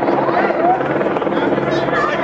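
A steady mechanical drone with voices talking over it.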